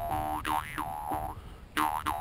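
Jaw harp (vargan) being played: a steady twanging drone whose overtones are swept down and up by the mouth in quick wah-like glides, with a fresh pluck near the end.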